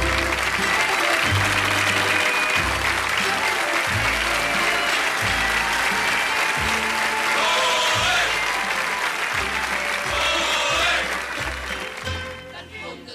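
Theatre audience applauding over the musical's orchestral accompaniment, which has a bass line moving in steady steps; the applause eases off near the end.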